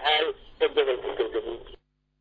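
A voice speaking with a thin, radio-like sound, cut off abruptly shortly before the end into dead silence.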